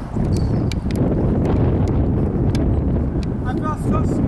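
Wind buffeting the microphone: a steady, loud rumble, with a few sharp clicks scattered through it.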